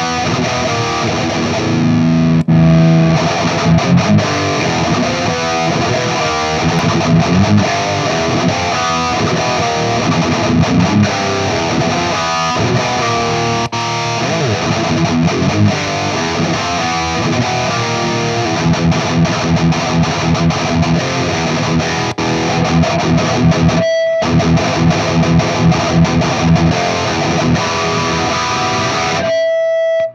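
High-gain distorted electric guitar playing a palm-muted metal riff through Peavey 5150 valve amp heads, heard through a Celestion Vintage 30 speaker in a Bogner cabinet. The playing breaks off briefly about 24 seconds in and stops sharply near the end.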